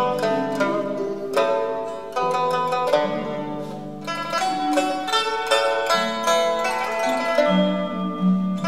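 Pipa playing a traditional Chinese melody in quick plucked notes with bursts of rapid strokes, over held lower notes.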